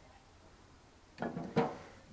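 A faint background hush, then a short burst of a person's voice close to the microphone a little over a second in.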